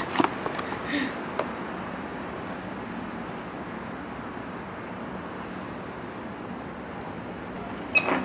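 A single cough, then steady background hiss of room noise with a few faint clicks while a burger is eaten from its cardboard box.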